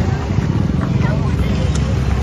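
Steady low rumble of motorbike and road-traffic engines close by, with the chatter of a crowd behind it.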